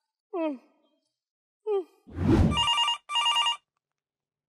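A short whoosh, then a telephone ringing in two short trilled bursts. Before them come a couple of brief voiced murmurs.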